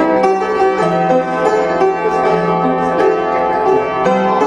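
A 1919 Gulbransen upright player piano played by hand: a lively ragtime piece with a busy, continuous run of notes.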